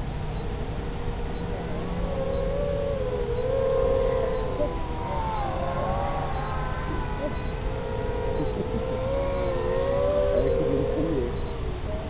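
FPV quadcopter's brushless motors on a 4S battery whining in flight. The pitch wavers and glides up and down with the throttle, and splits into several close tones as the motors run at slightly different speeds, over a low rumble.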